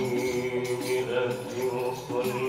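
A group of male voices chanting a maulid qasida in unison through microphones, holding long, steady notes.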